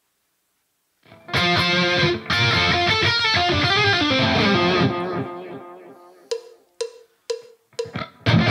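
Rock music with electric guitar and drums starts about a second in, plays for a few seconds and fades out. Then come four short, evenly spaced beats about half a second apart, a count-in before the song proper starts loud right at the end.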